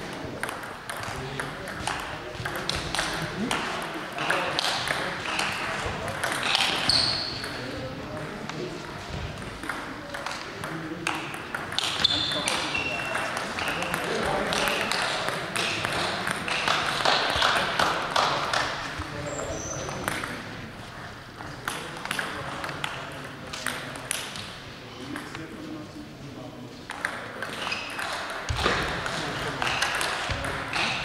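Table tennis rallies: the ball clicking off bats and the table in quick, irregular strings of sharp ticks, with background voices in the hall.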